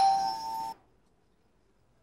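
The lower second note of a two-tone ding-dong doorbell chime rings on and cuts off suddenly under a second in, leaving quiet room tone.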